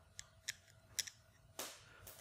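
Small metal hardware clicking as it slips from the hand and drops: three faint, sharp clicks, then a short, louder rattling burst near the end as it lands.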